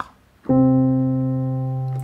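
A single piano note, middle-register C, played on a MIDI controller keyboard. It starts about half a second in and is held, fading slowly.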